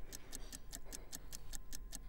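Countdown clock sound effect: rapid, even ticking, counting down to a price drop.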